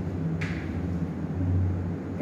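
A short scratch of chalk on a chalkboard about half a second in, over a low hum that swells briefly past the middle.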